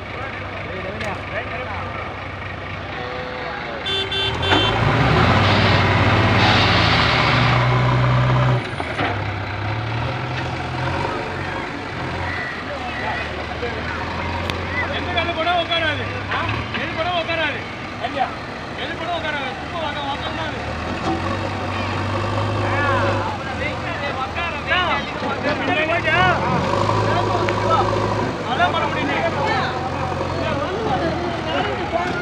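Heavy diesel engines of a loaded dump truck and a JCB 3DX backhoe loader running, revving hard for about four seconds starting about four seconds in as the backhoe pushes the stuck truck out of the mud. Afterwards the engines idle under people talking and calling out.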